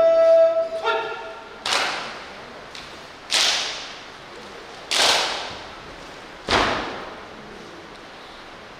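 A rifle firing party fires four volleys of a funeral gun salute, about a second and a half apart. Each sharp crack rings on in the hall's echo. Singing ends about a second in, before the first volley.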